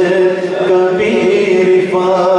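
Male devotional chanting in long held notes, moving to a new note about a second in.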